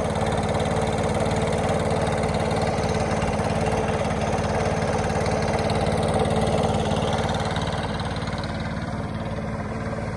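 An engine idling steadily, easing slightly quieter over the last few seconds.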